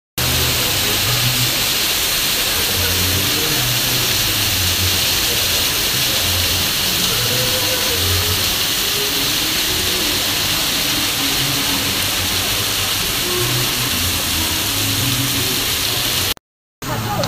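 Fountains spraying into a canal, a steady rushing of water with an uneven low rumble underneath.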